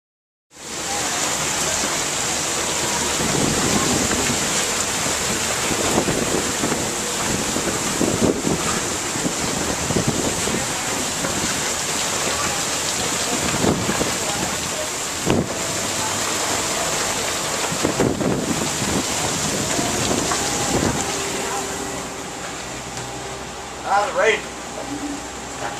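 Strong squall wind and rain on a sailing catamaran at sea, the wind buffeting the microphone in irregular gusts and easing slightly near the end.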